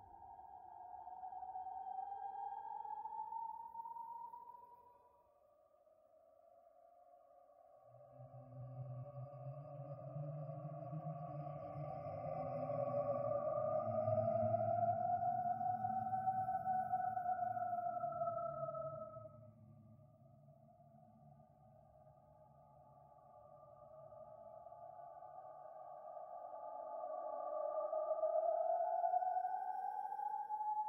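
Creepy horror ambience: slow, wavering tones that glide up and down in pitch, swelling and fading in long waves. A low rumble joins about eight seconds in and drops away near twenty seconds, and the tones swell again towards the end.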